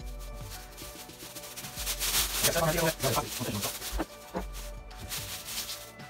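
Rustling and crinkling of a thin plastic anti-static wrap being pulled open off a new computer monitor, in a run of uneven rubbing strokes.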